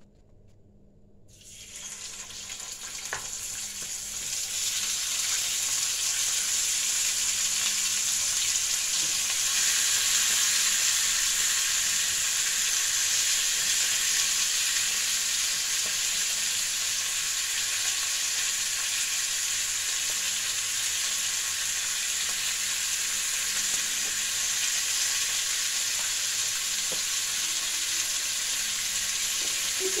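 Bhetki fish head and bone pieces sizzling in hot oil in a frying pan. The sizzle starts about a second and a half in, grows louder over the next few seconds as more pieces are laid in, then holds steady.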